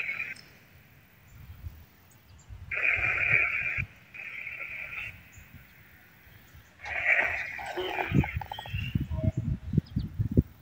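Bursts of crackly electronic static from a ghost-hunting device, each about a second long and switching on and off abruptly, at the start, about three and four seconds in, and again from about seven seconds. Low thumps join near the end.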